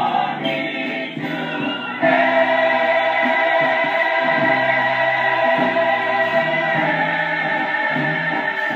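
A gospel mass choir singing, swelling into a loud held chord about two seconds in.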